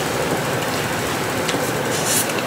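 Steady, even rushing background noise with no clear pitch or rhythm, and a faint tick about one and a half seconds in.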